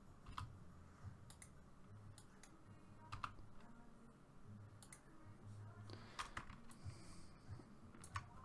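Faint clicks of a computer mouse and keyboard keys, scattered irregularly, over a low hum.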